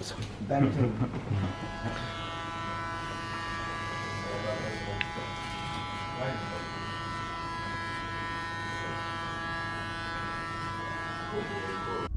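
Electric hair clippers buzzing with a steady hum as they are run up the back of the neck to fade the nape hairline. The hum comes in about a second and a half in, after a few words and a laugh.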